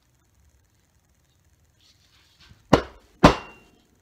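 Two sharp chopping blows about half a second apart, with light handling just before them: a newly unboxed edged hand tool being struck in to test its edge.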